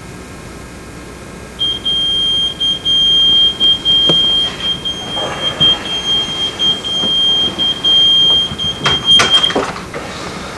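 Digital alarm clock beeping: a high electronic tone that starts about a second and a half in and goes on with brief breaks. Near the end come a few sharp clicks or knocks, and the beeping stops.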